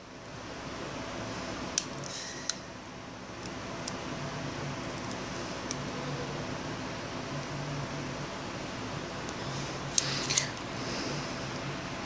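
Small sharp clicks of metal tweezers working a tiny antenna cable connector inside an opened iPhone 5, over a steady low hum. A sharper pair of clicks about ten seconds in is the connector snapping onto its socket on the logic board.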